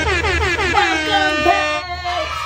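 Two women's voices calling out loudly in long, drawn-out tones, their pitch sliding and bending.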